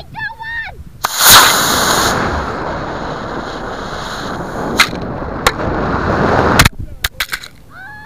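Estes model rocket motor igniting about a second in with a sudden loud rush of noise, heard from a camera riding on the rocket. The rushing noise of the flight runs on for several seconds with a couple of sharp cracks, then cuts off abruptly near the end as the rocket comes down in the grass, followed by a few clicks.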